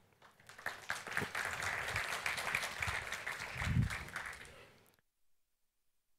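Audience applause in a lecture hall. It starts about half a second in, holds steady, then fades and stops suddenly about five seconds in, with a brief low sound near the four-second mark.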